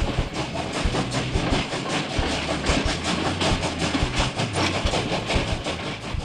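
Sound effect of a moving train: a quick, even rhythm of chuffs and clacks, running steadily.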